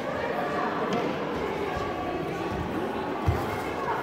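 Indistinct voices echoing in a large sports hall during a taekwon-do sparring bout, with one sharp, dull thump from the sparring fighters a little over three seconds in.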